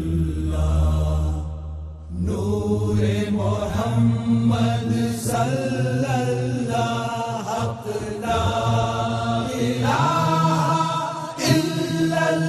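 Chanted Islamic devotional hamd: voices sing the words in chorus over a deep, low accompaniment. The singing breaks off briefly about two seconds in, then resumes.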